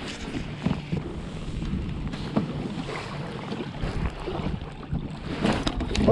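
Wind buffeting the microphone, with small waves lapping against a kayak's hull and a few light clicks.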